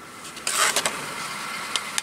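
Car engine idling, heard from inside the cabin, with a brief loud rustle of a paper envelope being handled about half a second in.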